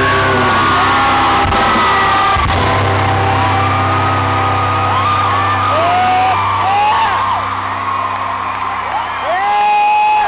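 Rock band's final chord held and ringing out through the arena PA, fading away shortly before the end, while the crowd whoops and yells over it.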